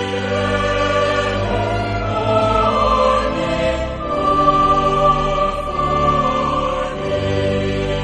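Choir singing the closing line of a hymn with organ accompaniment, the words drawn out on long, held chords.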